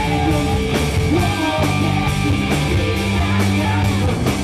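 Live rock band playing: electric guitar, bass and drum kit with a steady beat, and voices singing over it.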